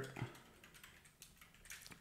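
Faint typing on a computer keyboard: a quick run of keystrokes.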